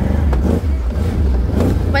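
Motorcycle engine running as the bike is ridden, a steady low drone.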